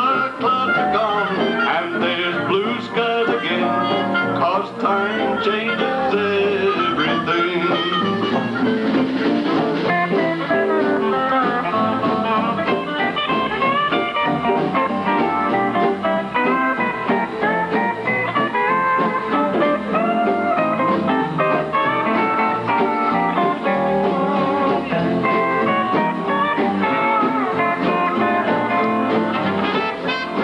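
A western swing band playing live: fiddles and pedal steel guitar over a drum kit.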